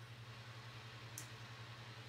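Quiet room tone: a steady low hum under a faint even hiss, with one brief faint high-pitched tick about a second in.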